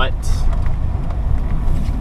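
A Nissan 240SX running down the road, heard from inside the cabin: a steady low engine and road rumble.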